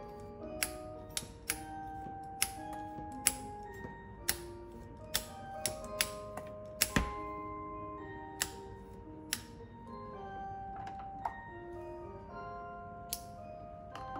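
Background music, a light melody of short mallet-like notes, over a dozen or so sharp, irregular clicks from a manual tufting gun punching yarn into rug backing. The clicks thin out after about nine seconds and stop shortly before the end.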